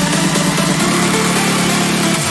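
Trance music in a breakdown: a steady, low synth tone with no kick drum. The tone shifts to a new note a little under a second in.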